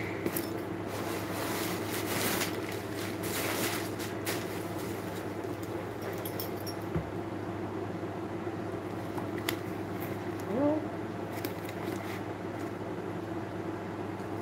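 Handling noise from a leather handbag being opened and turned: rustling with light clinks of its metal hardware, busiest in the first few seconds, over a steady low hum.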